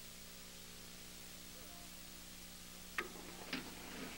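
Faint steady electrical hum and hiss of an old broadcast audio track, with two short clicks about three seconds in.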